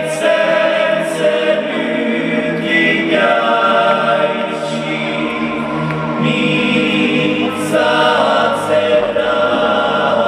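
Choir chanting in long, held notes through an arena's sound system, heard from among the audience.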